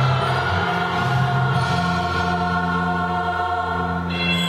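Children's choir singing long sustained chords, the lowest voices moving to a new note twice.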